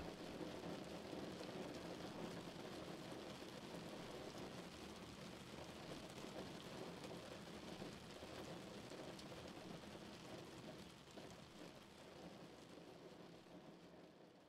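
Heavy rain falling on a car, a steady faint wash of rain noise that fades slowly away over the last few seconds.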